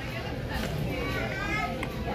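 Background voices of other diners in a restaurant dining room, including high children's voices, over a steady low room hum.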